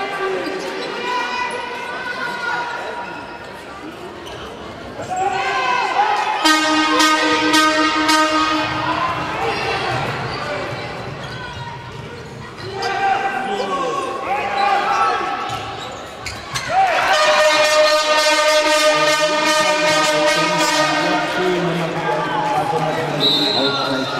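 A handball bouncing on a sports-hall floor amid spectators' shouting and chanting, echoing in the large hall. Two long, loud bouts of chanting stand out, one a few seconds in and one lasting through the last few seconds.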